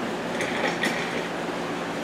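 Steady room noise with an air-conditioning-like hiss, broken three times by faint, brief rustles of handling.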